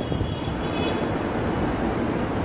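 A steady, low rumbling noise with no breaks or distinct events.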